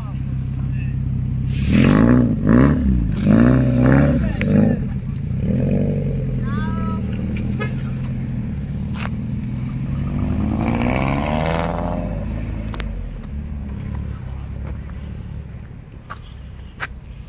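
Lancia Delta HF Integrale's turbocharged four-cylinder engine idling, revved in several quick blips starting about two seconds in, then pulling away with a rising note around ten seconds in and fading as the car drives off.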